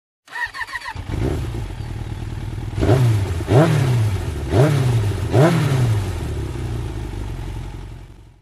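Motorcycle engine: a few short high chirps, then the engine runs from about a second in and is revved four times in quick blips, each rising sharply in pitch and falling back, before easing off and fading out at the end.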